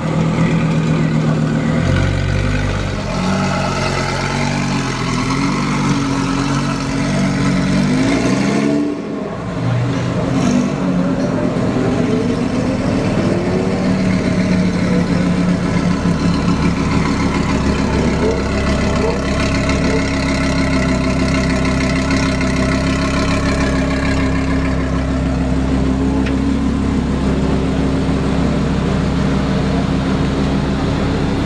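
Audi R8's 5.2-litre V10 with a PP-Performance exhaust, revving up and down for the first several seconds. After a break about nine seconds in it runs steadily at low revs, with a few brief rises.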